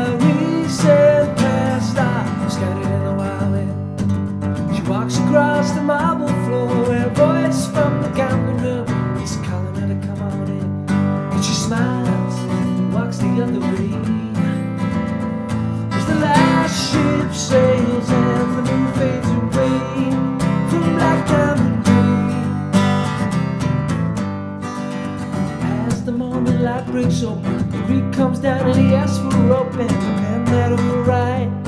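Acoustic guitar strummed in a steady, driving rhythm, playing the chords of a folk song.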